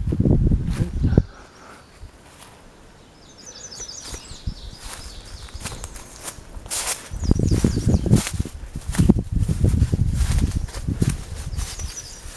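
Footsteps and low rumbling noise from a handheld phone as someone walks through the woods, loudest in the first second and again over the second half. A songbird sings short high trills in the background a few times.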